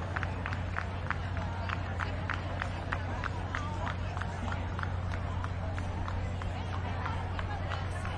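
Outdoor crowd ambience: indistinct murmur of people around the ring over a steady low hum, with a rapid run of short high chirps or ticks, about three or four a second.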